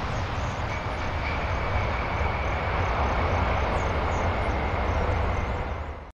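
Jet engines of a four-engined airliner running with a heavy low rumble as it touches down on the runway, a thin steady whine joining about a second in. The sound cuts off abruptly at the end.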